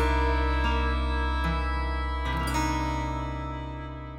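Music: the song's closing chord held and fading out steadily, with a few notes shifting under it.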